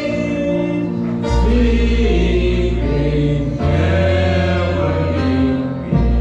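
A group of men and women singing together in unison and harmony into microphones, with live band accompaniment; sustained bass notes shift about a second in and again midway.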